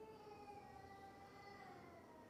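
Near silence with one faint, held pitched tone that lasts about three seconds and sags slightly in pitch.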